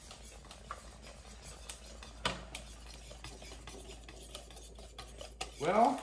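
Wire whisk stirring crepe batter in a mixing bowl, with a run of light ticks and scrapes as the whisk hits the bowl's side, and one sharper knock a little after two seconds in.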